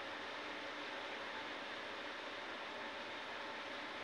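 Steady background hiss with no distinct events, in a pause between spoken sentences.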